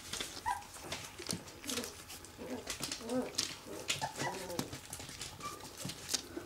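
Orphaned puppy whimpering in a string of short, high squeaks while rooting its nose into a cat's flank, the nuzzling an orphaned puppy does when seeking to suckle. Small clicks and crinkles of newspaper underfoot run beneath it.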